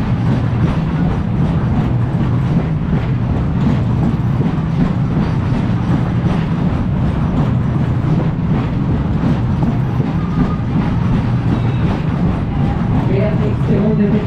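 Heyn Berg- und Talbahn (hill-and-valley carousel) running at full speed: a steady, loud rumble with clatter from the cars rolling over the undulating circular track.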